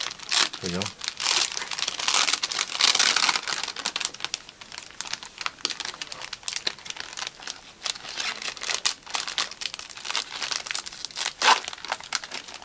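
Foil Pokémon card pack wrappers crinkling and rustling as hands handle them and work them open. The crinkling is busiest in the first few seconds, eases off, then picks up again.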